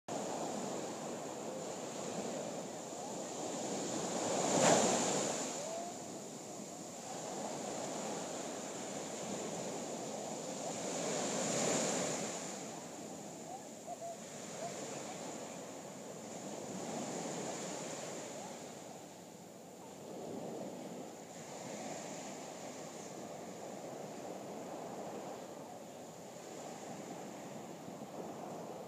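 Small waves breaking and washing up a sandy beach, the surf swelling and easing every few seconds, loudest about five and twelve seconds in.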